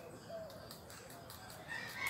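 A rooster crows, one long call beginning near the end, over faint knife taps on a cutting board.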